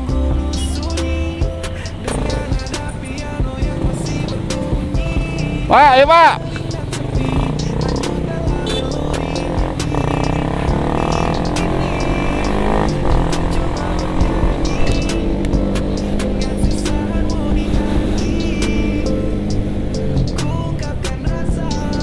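Motorcycle engine running as the bike pulls away and rides in traffic, under background music. A loud wavering, voice-like note stands out about six seconds in.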